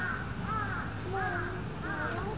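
Birds calling: short calls, each rising then falling in pitch, about two or three a second.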